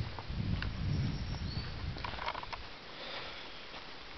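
Footsteps on a dry forest trail, with scattered light clicks of twigs and litter underfoot. A low rumble of breath or handling noise on the microphone is strongest in the first couple of seconds.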